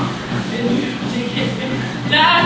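A treadmill running with a steady low motor hum, under faint country music.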